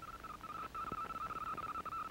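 A steady high-pitched electronic tone with a fainter, higher tone joining it for about a second, and a few faint scattered clicks beneath.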